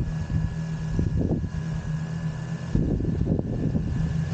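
DJI Mavic Air 2 drone's motors and propellers running close to the microphone: a steady hum with a fainter high whine over gusty rushing prop wash, which gets heavier about three seconds in.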